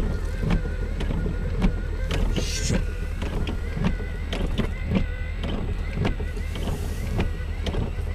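Raindrops tapping on a car, sharp irregular ticks several a second, heard from inside the car over a steady low rumble.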